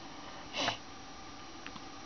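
A person sniffs once, briefly, about half a second in, against quiet room tone.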